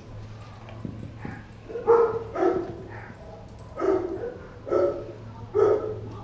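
A Doberman giving about six short, pitched vocal sounds in the second half, with a couple of faint clicks before them as it works at a raw beef leg bone.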